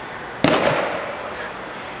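A pitched baseball smacking into a catcher's mitt: one sharp pop about half a second in, with a short echo dying away off the hard walls of the indoor hall.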